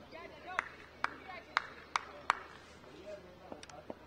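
A person clapping hands five times in quick succession, then a couple of lighter claps or taps, over faint voices.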